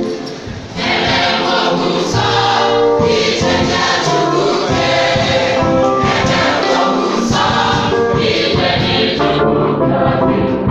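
Church choir singing together, swelling to full voice about a second in.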